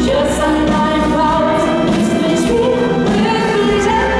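Live pop music: three women singing together in harmony into microphones, over an instrumental backing with a steady deep bass.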